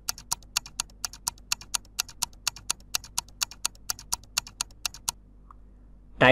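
Countdown-timer ticking sound effect: a quick run of sharp clicks, several a second, stopping about five seconds in.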